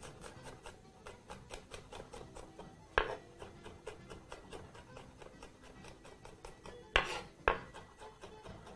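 Chef's knife rapidly chopping garlic cloves on a wooden cutting board: a quick, steady run of light taps, with a louder knock about three seconds in and two more near the end.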